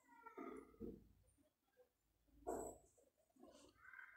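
Near silence, broken by a few faint, brief pitched cries: one near the start, one just under a second in, and another about two and a half seconds in.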